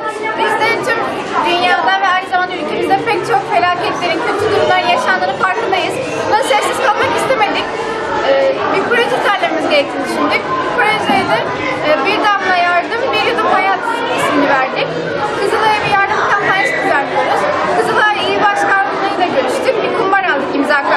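Many children chattering at once in a large room, with a girl's voice speaking close by over the hubbub.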